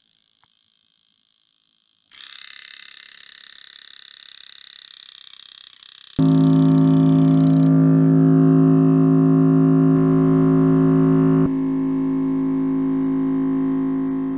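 Thermoacoustic engines singing. A steady high-pitched tone starts abruptly about two seconds in. A much louder low drone with many overtones cuts in a few seconds later and drops somewhat in level near the end.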